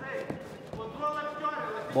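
A man's voice speaking, with steady arena background.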